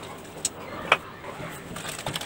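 A wire whisk stirring a wet gram-flour (besan) batter in a steel bowl: a soft, low swishing with two brief clicks, about half a second and a second in.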